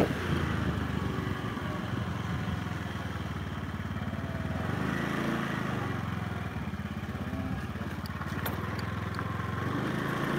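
Small motorcycle engine running steadily while riding along, its pitch rising and settling briefly about five seconds in. A few light clicks come near the end.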